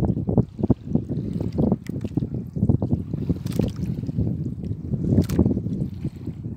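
Wind buffeting the microphone over choppy sea water, an uneven gusty low rumble, with two sharper hits about halfway through and near the end.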